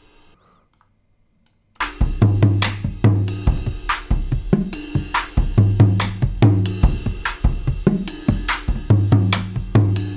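Recorded acoustic drum kit played back through a bus compressor (Acustica Audio TAN): a steady groove of kick, snare and cymbal hits that starts about two seconds in, after a near-silent pause.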